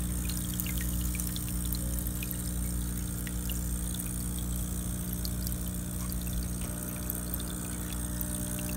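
Aquarium air pump humming steadily, with water bubbling and trickling from the air stone, small bubble ticks scattered throughout.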